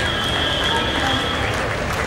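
Audience applauding in a hall, a steady patter with voices and music from the sound system mixed in.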